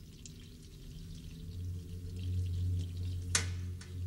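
A low, steady droning tone that swells louder from about a second and a half in. Near the end comes one short, sharp breathy sound, like a gasp or sob from the crying woman.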